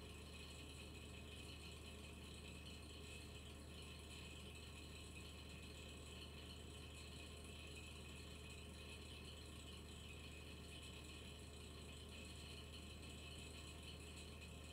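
Near silence: the steady low hum and faint high whine of a desktop PC's cooling fan.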